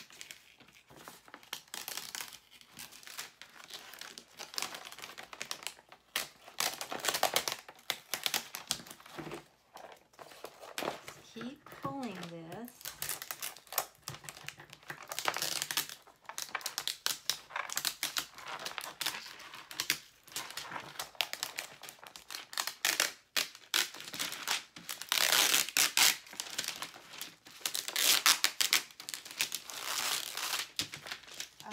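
A cut Cricut Infusible Ink transfer sheet being weeded by hand: the paper sheet crinkles, crackles and tears in irregular bursts as the excess is peeled off its liner, loudest in the last few seconds. A brief murmur of voice comes about twelve seconds in.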